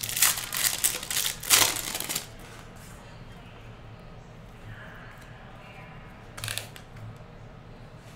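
Foil wrapper of a trading card pack crinkling and tearing as it is opened, in several loud crackles over the first two seconds. A brief rustle follows about six and a half seconds in.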